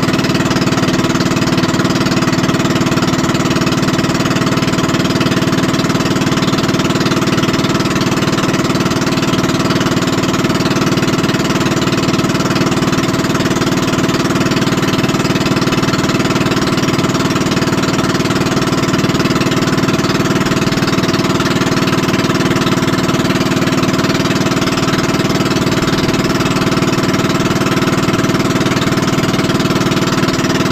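Pumpboat engine running steadily under way, a loud, constant drone that holds one speed throughout.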